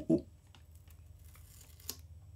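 Faint handling of a guitar multi-effects pedal turned over in the hands, with a few light ticks and one sharp click near the end.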